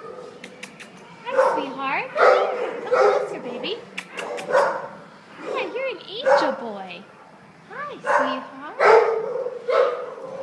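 Dogs barking in shelter kennels: repeated calls every half second to a second, some with high gliding pitch, and a few sharp clicks in the first second and around four seconds in.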